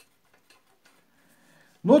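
Marker pen writing a word on paper: a few faint ticks and a brief soft scratch from the pen strokes.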